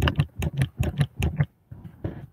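Computer keyboard keys clicking in a quick run, about six clicks a second, stopping about one and a half seconds in.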